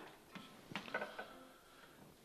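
A quiet pause: faint room tone with a few soft small clicks, and a faint thin held tone through the middle.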